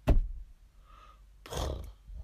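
A sudden loud thump, close to the microphone, acting out the van striking the man. A short noisy rush follows about a second and a half later.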